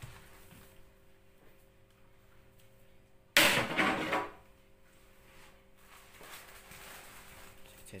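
A scored sheet of clear 5 mm float glass snapping along its cut line as it is pressed down over a wooden batten laid beneath the score: one sharp, loud crack about three and a half seconds in that dies away within a second.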